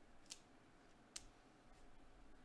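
Near silence with two faint, sharp clicks about a second apart.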